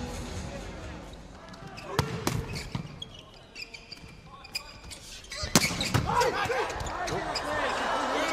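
Volleyball being struck in an indoor arena: sharp smacks of hands on the ball about two seconds in and again around five and a half to six seconds, as a serve leads into a rally. Over arena noise, crowd and player voices swell in the second half.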